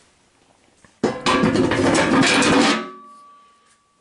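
A sudden loud metallic clatter about a second in, lasting nearly two seconds, then fading with a thin ringing tone.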